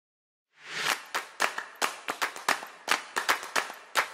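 Opening of a background music track: after a brief rising swoosh, sharp reverberant claps in a steady rhythm of about four a second.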